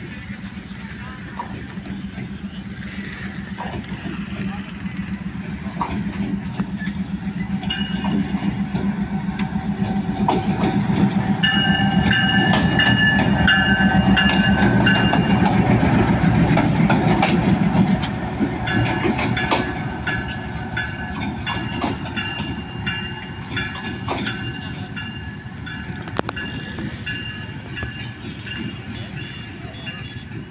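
A Pakistan Railways GEU-20 diesel-electric locomotive approaching and passing close by: its engine rumble grows louder, peaks for several seconds as it goes past with wheels clacking over the rail joints, then drops off sharply. High, steady multi-note tones sound on and off over it during the second half.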